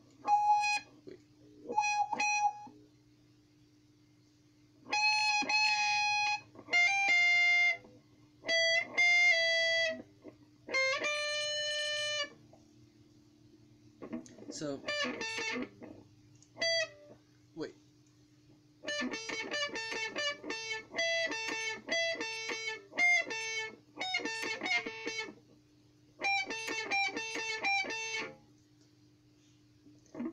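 Stratocaster-style electric guitar playing lead solo phrases with pauses between them. It starts with a few short notes, then several held notes, then fast runs of picked notes through the second half. A steady low hum sits underneath.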